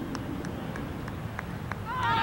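Open-air field ambience with a steady low rush of breeze on the microphone and a few faint, irregular ticks.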